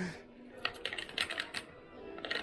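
Cash register keys being pressed: a quick run of sharp clicks over about a second, with faint voices behind.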